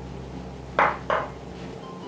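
Spatula stirring yogurt in a glass mixing bowl, with two short scrapes a little under a second in, over a low steady hum.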